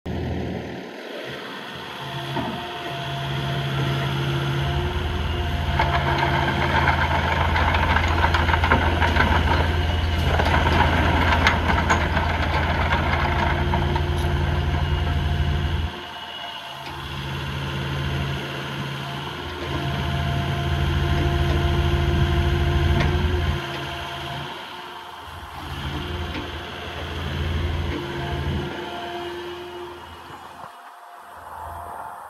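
Kubota KX080-4 midi excavator's four-cylinder diesel engine running, its load rising and falling as the hydraulics work the boom and bucket. The sound grows louder and busier in the first half, drops suddenly about halfway through, then swells and eases again.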